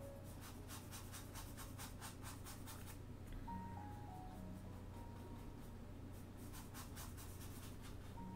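A small brush scrubbing soft pastel into sanded Pastelmat paper: faint, scratchy strokes at about five a second, in two runs, one near the start and one near the end. A quiet background tune of stepwise falling notes plays under it.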